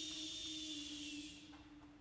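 Chamber choir voices holding one soft hummed low note, with a high steady hiss above it that fades out about one and a half seconds in, leaving the hum.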